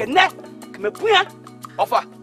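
A voice speaking in short phrases over background music with a steady low drone.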